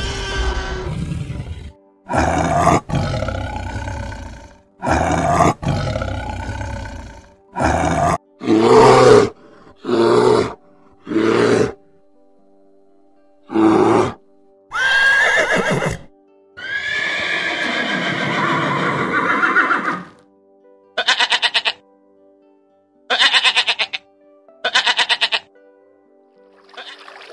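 A string of different animal calls, one after another, over steady background music: a roar at the start, then about a dozen separate cries and growls of a second or so each, and three short quavering calls near the end.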